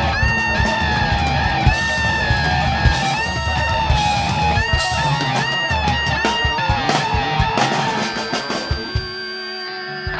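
Live rock band playing: an electric lead guitar line with repeated bent notes over drums and bass guitar. About nine seconds in, the drums drop away and a single held note rings on.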